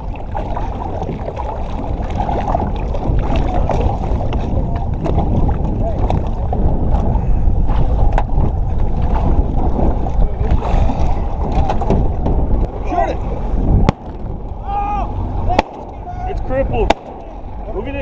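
Steady low rumble of wind and lake water around an aluminum boat as it comes alongside, at a level close to the boat's side. About 14 s in the rumble drops abruptly, and a few sharp knocks of hull and gear follow, with faint voices.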